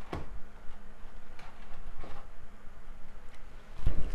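Tarot cards being handled as a card is drawn from a deck: a few soft taps and rustles, about three of them spread across the stretch, over a faint steady hum.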